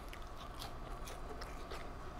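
A person biting and chewing a crispy air-fried French fry, with faint, scattered crunches.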